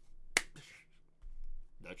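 A single sharp click about a third of a second in.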